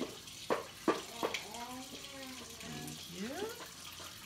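Kitchen faucet running steadily into the sink, with a few sharp knocks in the first second and a half and a small child's voice in the middle.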